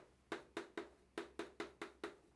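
Chalk tapping against a blackboard while writing, a quick series of short, sharp taps about four to five a second.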